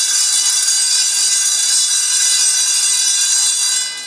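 A public-address system squealing with a loud, steady, high-pitched electronic tone that holds one pitch and cuts off near the end, in the way of microphone feedback through the hall's speakers.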